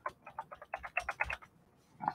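Typing on a computer keyboard: a quick run of about ten key clicks in the first second and a half, then it stops.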